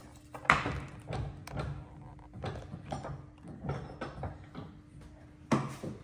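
A timber workpiece being set and clamped in a woodworking bench vise: a series of wooden knocks and taps, the loudest about half a second in and near the end, over a faint steady hum.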